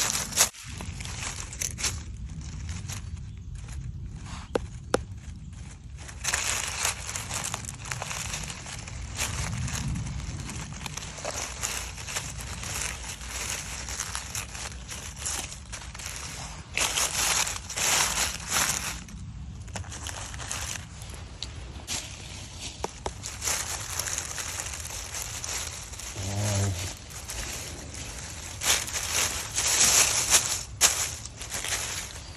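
Dry fallen beech leaves rustling and crunching in irregular bursts as a hand rummages through the leaf litter and handles mushrooms, with the loudest crunching about halfway through and again near the end.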